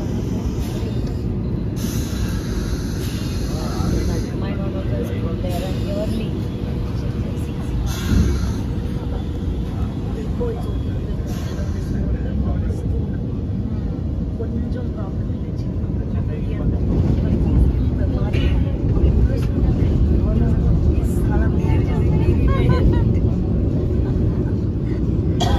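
Interior running noise of a moving Vande Bharat Express coach: a steady low rumble of the train on the track that grows a little louder after the middle, with faint passenger voices in the background.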